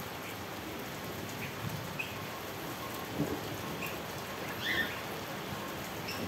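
Steady rain falling, with scattered drops ticking on nearby surfaces and a couple of slightly louder taps past the middle.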